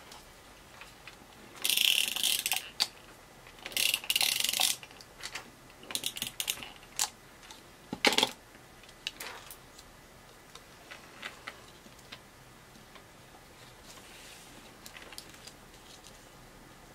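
Glue-dot tape runner drawn across paper twice, a short raspy ratcheting zip each time, followed by a sharp click and a few light clicks and taps.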